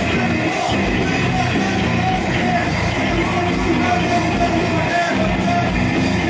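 Live punk band playing loudly: electric guitars, bass and drums with repeated cymbal hits, and a vocalist yelling into a handheld microphone over the band.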